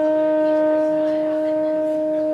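Tenor saxophone holding one long, steady note on its own, with no bass under it.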